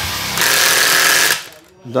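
Hilti SIW 6AT-22 cordless impact wrench hammering a nut down onto a concrete anchor stud for about a second and a half, then cutting off at its preset torque. A voice says "done" near the end.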